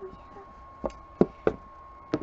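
Three sharp knocks of a hard plastic Littlest Pet Shop figure being handled and knocked against a surface, starting about a second in and about a third of a second apart, over a faint steady high hum.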